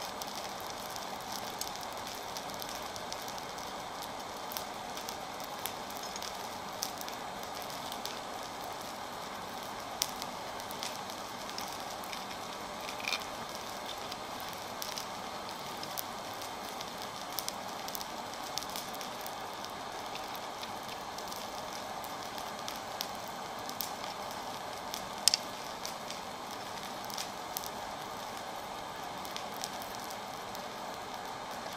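Coal forge fire burning with a steady rush and scattered crackling. A few sharper metallic clicks come through, the loudest about 25 seconds in, as steel rods and wire are handled on the anvil.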